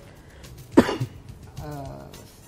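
A single sharp cough a little under a second in, followed by a short voiced sound near the end.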